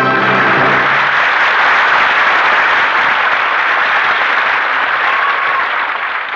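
An orchestral chord ends about a second in, giving way to sustained audience applause that eases off slightly near the end.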